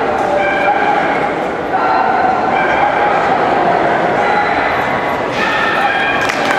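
Dogs whining and yipping with drawn-out high-pitched cries, over a steady murmur of crowd chatter in a large hall.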